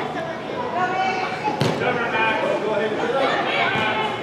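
Voices of spectators and players calling out during an indoor soccer game, with no clear words. One sharp thump of the ball comes about one and a half seconds in.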